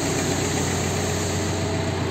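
Mitsubishi MT-21D mini tractor's 21 hp four-cylinder diesel engine idling steadily.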